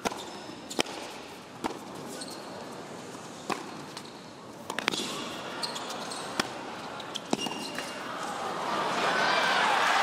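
Tennis rally: a tennis ball is struck by rackets and bounces on the hard court, giving sharp single hits roughly once a second over a hushed arena. Near the end the crowd noise swells as the point builds.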